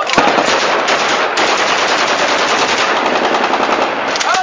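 Automatic rifle fire shot into the air: one long, rapid, unbroken burst of shots.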